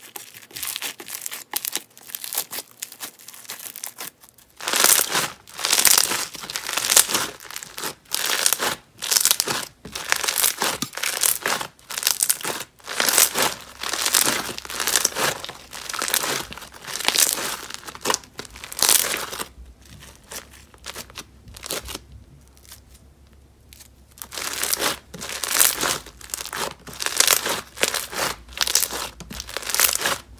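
Foam slime packed with foam beads being squeezed and kneaded by hand, giving dense, crunchy crackling. The crunching is softer for the first few seconds and falls away briefly about two-thirds of the way through before picking up again.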